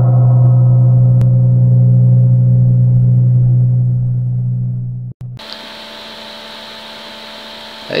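Intro sound effect: a deep held tone that slowly fades over about five seconds. After a short cut, a steady hum with hiss follows.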